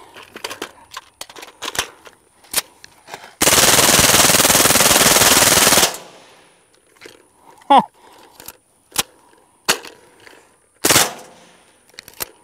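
Suppressed full-auto .22 LR fire from a CMMG 22 AR upper with a KG Made Swarm titanium suppressor: one continuous burst of about two and a half seconds from a heavily fouled, uncleaned gun that has been failing to feed. Sharp metallic clicks of the gun and drum magazine being handled come before and after the burst, and a single short loud report comes near the end.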